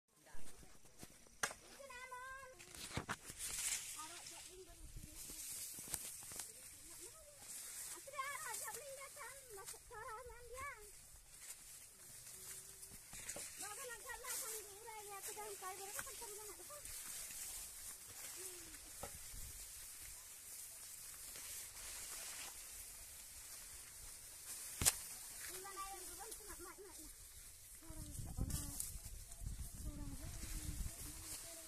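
Leaves and stalks of tall millet rustling and brushing past as people walk through the crop, a steady soft crackling hiss. Faint voices talk now and then, and there are two sharp knocks, one at the very start and one near the end.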